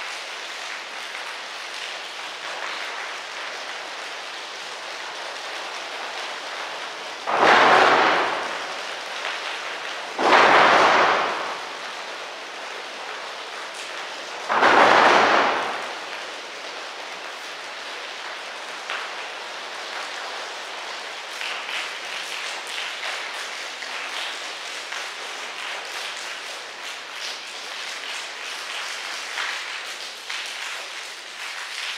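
A choir's body-percussion rainstorm: a steady patter of hands, with light claps and snaps, sounding like rain. Three loud swells like thunder rise and fade within the first half.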